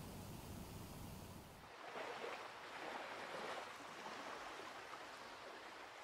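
Faint wash of small waves on a shore, swelling and easing a few times and growing fainter toward the end, after a steady hiss in the first second or two.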